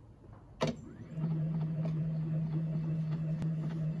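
A click, then the PHONOCUT home vinyl recorder's motor starting about a second in and running with a steady low hum.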